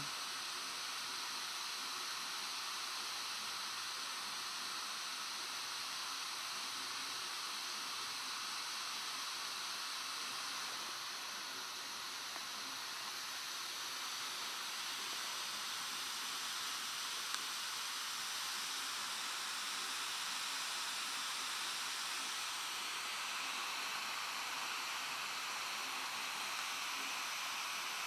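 A steady, even hiss with no change in level, and one faint click about 17 seconds in.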